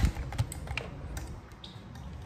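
Handling noise from a camera on a tripod being picked up and moved: irregular clicks and knocks, the loudest at the very start and another about half a second in.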